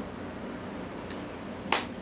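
A single sharp click near the end, over a faint steady low hum, with a fainter click about a second in.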